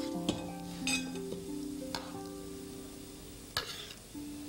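Metal ladle stirring curry broth in a ceramic pot, with a few short clinks and scrapes against the pot, over background music of held notes.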